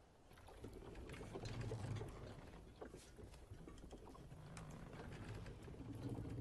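Faint creaking and small wooden knocks of a rowboat rocking on calm water.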